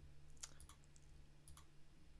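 Near silence: a handful of faint, sharp clicks of someone working a computer, in two small groups about half a second and a second and a half in, over a faint steady hum.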